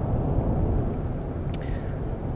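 Steady low background rumble with a faint click about one and a half seconds in.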